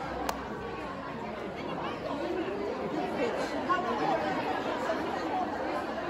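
Several people talking over one another, with one sharp click a moment in as a wooden Chinese chess piece is set down on the board.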